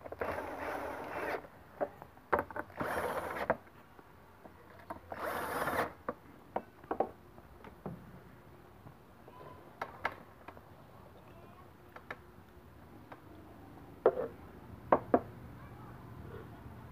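Cordless drill driving screws into the lid of a plastic enclosure, in three short runs over the first six seconds. Scattered clicks and knocks follow, with a few sharper clicks near the end.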